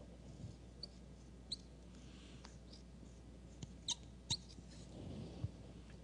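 Felt-tip marker squeaking faintly on a whiteboard in a few short, high strokes while drawing, the loudest two close together about four seconds in.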